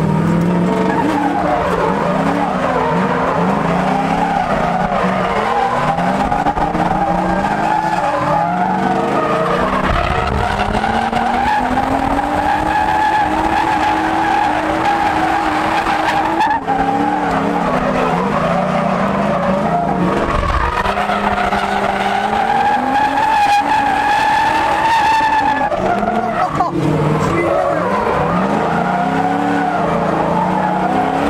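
Drift car engines revving, the engine note climbing and falling again and again through a close tandem slide, with tyres squealing. It is heard from inside the chase car's cabin.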